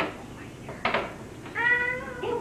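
A dog whining: a short noisy sound about a second in, then a steady, high-pitched whine lasting about half a second near the end.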